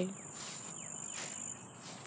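Insects trilling outdoors: a faint, steady high-pitched tone over a soft hiss, the tone weakening near the end.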